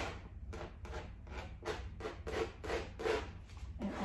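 Brisk rubbing of paint across a textured canvas with a small hand-held applicator: a steady scrubbing rhythm of about three strokes a second.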